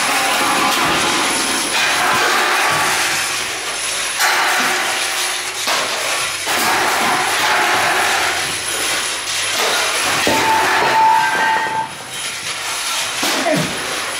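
Loud, dense noise from a live experimental noise-music performance with metal objects: a harsh, grinding wash without a beat, with a brief held high tone about ten seconds in.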